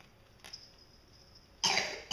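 One short, loud cough near the end, after a quiet stretch with a faint click.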